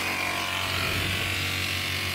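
Three-wheeler's engine running with a steady buzz and a low hum, under a wash of hiss.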